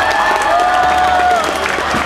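A crowd of schoolchildren cheering and clapping, with a few long, high-pitched held shouts in the middle.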